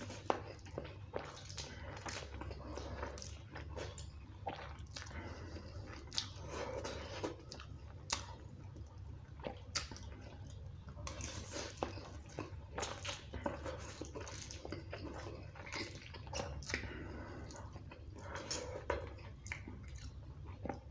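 A person chewing mouthfuls of spicy instant noodles close to the microphone, with frequent sharp clicks and smacks throughout. A steady low hum runs underneath.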